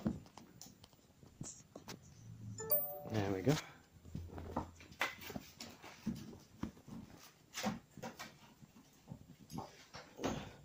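Handling noise: scattered clicks, knocks and rustles as things on the floor are moved. About three seconds in there is a short beep-like tone, then a brief whining, voice-like sound.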